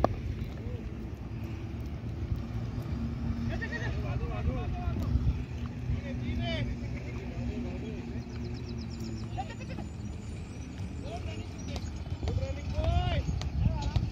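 One sharp knock of the cricket ball reaching the batter's end, followed by several wordless shouted calls from the players that rise and fall in pitch. A steady rumble of wind on the microphone runs underneath.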